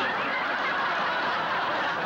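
Studio audience laughing, breaking out suddenly and holding steady.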